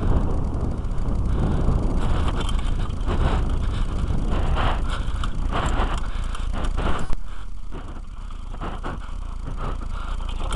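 Wind rumbling on a helmet camera's microphone while a Kona mountain bike rides over rough dirt and grass, with frequent knocks and rattles from the bike on the bumpy ground and a sharper knock about seven seconds in.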